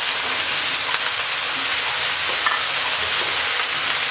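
Chopped mixed vegetables (cauliflower, green beans, carrot) sizzling in hot oil in a frying pan, a steady hiss, with a wooden spatula stirring them near the end.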